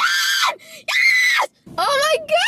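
A young woman screaming in excitement: two long, high-pitched screams, the second a little longer, with a short break between them. Her voice carries on near the end.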